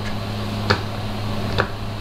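Two short, sharp computer-mouse clicks about a second apart, the first about two-thirds of a second in and the second near the end, over a steady low hum.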